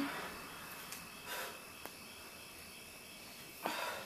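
Quiet room tone with a faint steady high whine, and a woman's breathing as she exercises on a stability ball: one breath about a second and a half in and another near the end, with a small click in between.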